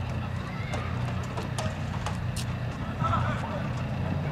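Soccer-field ambience: distant shouts from players and spectators, with scattered sharp taps of footsteps and ball contacts, over a steady low hum. The voices grow louder about three seconds in.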